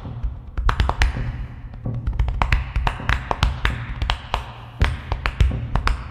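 Body percussion: open hands slapping the chest and torso in a quick, uneven rhythm of sharp slaps, several a second, over deeper thumps.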